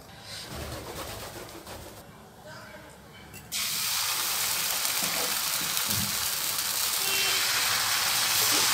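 Dosa batter sizzling on a hot tawa. A steady hiss starts suddenly about halfway through as batter is poured onto the griddle and spread with a ladle, after a quieter first half.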